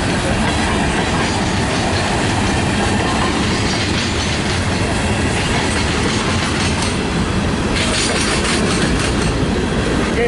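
Freight train of tank cars rolling past close by: steady noise of steel wheels running on the rails, with sharper clicks near the end.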